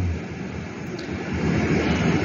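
Steady outdoor background noise: an even rumble and hiss with no distinct events, dipping a little early on and swelling slightly toward the end.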